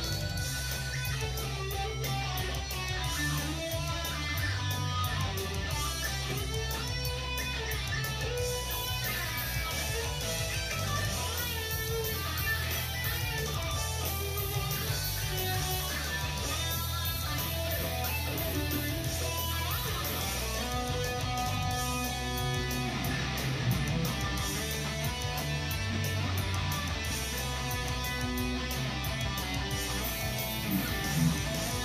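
Schecter Apocalypse C-1 FR electric guitar with passive pickups, played without a break through a Marshall amp at a steady level.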